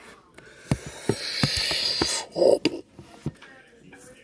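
A plastic toy helmet being handled and pulled on: rubbing and scraping against the plastic, with a run of irregular clicks and knocks and a hissing rush through the middle. A short vocal sound comes about two and a half seconds in.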